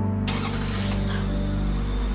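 Soft sustained background music, with a car engine starting about a quarter second in: a sudden rush of noise that fades over about a second.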